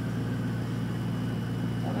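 A steady low hum with no change in pitch or level, and no other sound standing out.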